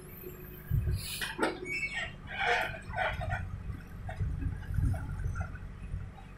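Backhoe loader's engine running low and steady while its rear bucket digs into soil, with repeated short bird calls, like hens clucking, over it from about a second in.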